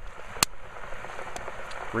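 Water boiling off in a hot lard-and-grease mixture in a cast-iron pot: a steady bubbling hiss with one sharp pop about a quarter of the way in and a couple of fainter pops later. The boiling and spitting show that water is still left in the fat; it stops once all the water has boiled out.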